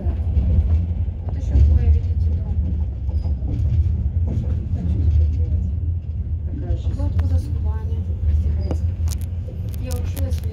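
Steady low rumble of a moving passenger train heard from inside the carriage, with a few sharp clicks near the end.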